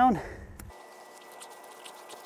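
A few faint clicks from a flat-head screwdriver turning the terminal screw on a pipe bonding clamp, clamping a bare copper ground wire to a black iron gas pipe.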